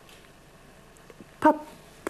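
A pause in a woman's speech: faint, steady room tone, then one short spoken syllable about one and a half seconds in.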